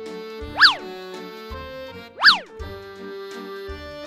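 Bouncy cartoon background music with held notes, cut through twice by a loud, quick swoop that shoots up in pitch and falls straight back down, about half a second in and again past two seconds.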